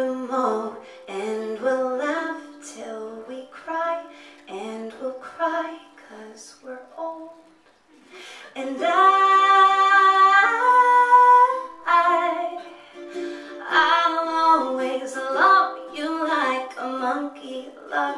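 A woman singing live over plucked string accompaniment, holding one long loud note about nine seconds in.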